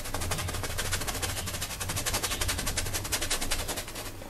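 Rapid, even tapping, about a dozen taps a second, over a low steady hum.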